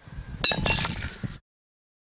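A low rumble, then a sudden crash about half a second in, followed by clinking, glassy ringing and rattling that cuts off abruptly after about a second.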